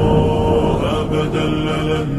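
Slowed-down, reverberant nasheed: layered voices hold a long, steady chanted note that shifts pitch about a second in.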